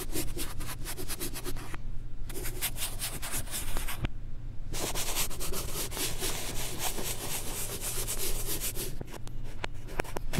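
Chalk rubbing rapidly back and forth on a blackboard, shading in a drawing with dense scratchy strokes, played in reverse. The strokes break off briefly about two seconds and four seconds in.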